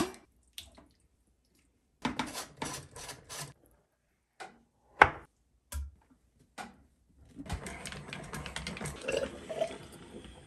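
Metal sausage-stuffer parts clinking and knocking as they are handled, with one sharp click about halfway through. In the last two or three seconds comes a steadier wet sloshing and dripping as watery liquid from the ground frog-leg meat runs out of the stuffer.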